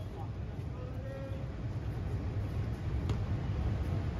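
Outdoor ambience with a steady low rumble. A brief faint voice comes about a second in, and a single faint tap about three seconds in.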